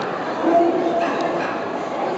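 A dog barks once, a short pitched call about half a second in, over a steady murmur of crowd chatter in a large hall.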